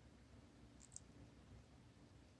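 Near silence: quiet room tone, with a faint quick double click about a second in.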